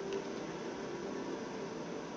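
Steady, even hiss of room tone with no distinct sounds.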